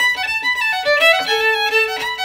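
Solo fiddle playing a Donegal reel up to speed: a run of quick bowed notes, with one lower note held for most of the second half.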